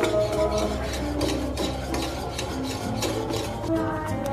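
A wire whisk stirs a thick cheese sauce in a metal saucepan, its wires scraping and clicking against the pan in quick, repeated strokes. Background music plays underneath.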